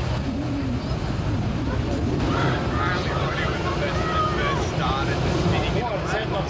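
Sprintcar engines running at low speed, a steady rumble, with indistinct speech over it from about two seconds in.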